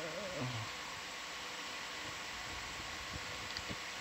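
Steady low hiss and hum of room tone, with the tail end of a voice in the first half second and a few faint low knocks in the second half.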